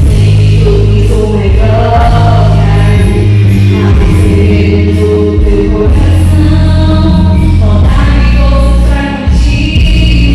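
Two women singing a gospel song through microphones over loud, bass-heavy accompaniment, with the melody held continuously.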